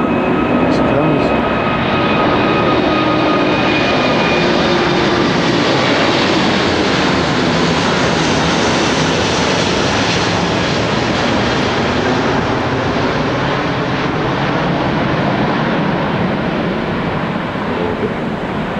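Malaysia Airlines Airbus A380 climbing out overhead after take-off, its four Rolls-Royce Trent 900 jet engines making a loud, steady rushing noise. A faint whine drifts slightly lower near the start, the noise is fullest around the middle as the jet passes, and it eases a little toward the end.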